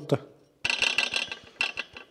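A quick run of light metallic clicks and rattles, about a second long, from metal parts being handled in the mini loader's engine bay. The engine is not running.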